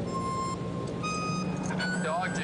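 Steady low drone of a DC-3's radial piston engines, with three short high beeping notes laid over it, each a step higher than the last.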